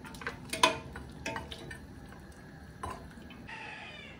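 Long metal spoon stirring in a stainless steel pot, clinking against the side several times about a second apart.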